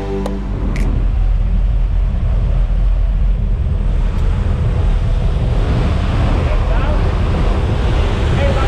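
Loud, steady rush of wind and aircraft engine noise through the jump plane's open door in flight, with the wind buffeting the microphone.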